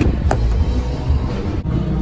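Car door handle pulled and the door opened, one sharp click shortly after the start over a steady low rumble of traffic and handling noise.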